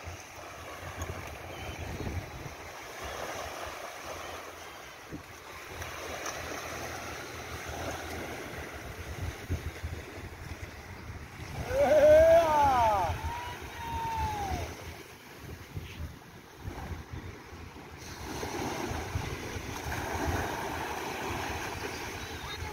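Surf washing on a beach, with wind on the microphone, as a steady noise that swells and ebbs. About twelve seconds in comes a short, loud call that rises and falls in pitch.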